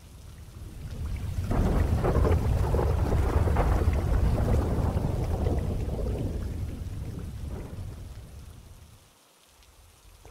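A long rolling thunder rumble over rain. It swells over the first two seconds and fades away by about nine seconds in.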